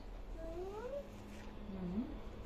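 A single short vocal cry rising in pitch, followed by a low steady hum.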